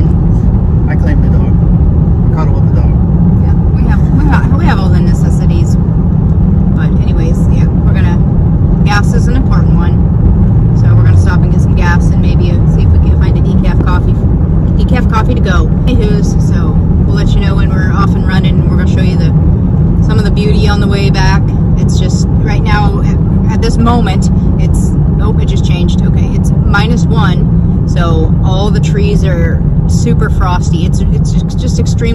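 Steady low road and engine rumble inside the cabin of a moving car, with voices talking over it.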